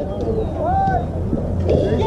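Voices of players and onlookers calling out across the field, with one drawn-out call about halfway through, over a steady low rumble of wind on the microphone.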